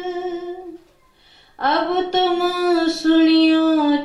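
A solo voice singing devotional verses slowly in long held notes; the line breaks off just before a second in, and after a short silence a new phrase begins and is held steadily.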